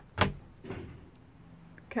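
Overhead cabinet door being opened: one sharp click of the latch just after the start, then a fainter rustle as the door swings open.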